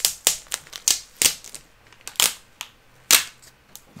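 Adhesive tape being peeled off the flap of a plastic comic-book bag: a string of sharp, irregular snaps and crackles, about eight in four seconds.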